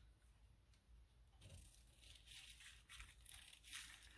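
Faint snipping and rustling of scissors trimming the edge off a sheet of thin tissue paper, starting about a second and a half in.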